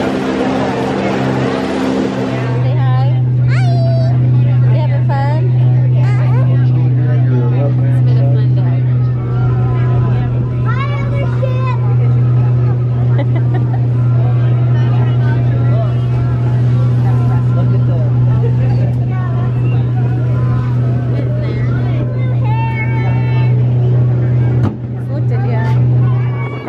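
Small passenger ferry boat's engine running with a steady low drone, which sets in strongly about two seconds in and dips briefly near the end; water washes along the hull, and indistinct voices of passengers carry over it.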